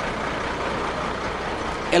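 Steady outdoor background noise in a pause between words: an even low rumble and hiss with no distinct events.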